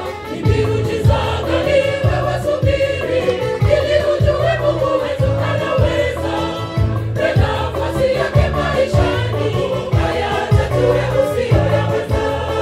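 Gospel choir of many voices singing live into microphones, over low bass notes and a steady beat.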